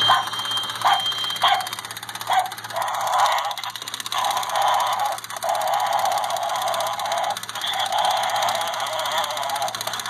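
Small animated skeleton-dog Halloween prop sounding through its tiny built-in speaker. It gives four short barks in the first couple of seconds, then a longer run of thin, narrow-sounding noise with a few brief breaks.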